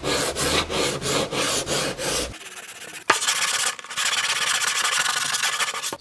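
Hand sanding along the wooden rail of a paulownia surfboard with a folded 80-grit cloth-backed sandpaper disc, in even back-and-forth strokes about four a second. About two and a half seconds in the sound changes abruptly: a sharp click, then a steadier, brighter, continuous sanding rasp.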